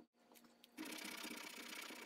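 Flat metal file rasping steadily across a wooden grip piece clamped in a vise, starting about a second in after a few light handling clicks.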